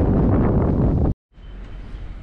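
Wind buffeting the camera's microphone, a loud, rough rush that cuts off abruptly about a second in. A much quieter, steady background hiss follows.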